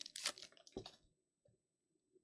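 Foil trading-card pack wrapper crinkling and rustling as the cards are pulled out, with one sharp click about three-quarters of a second in; the handling stops after about a second.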